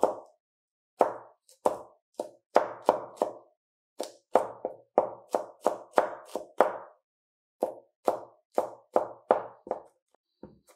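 Chef's knife chopping on a plastic cutting board: rapid, even knocks of the blade, about three a second, with two brief pauses, once near the start and once about seven seconds in.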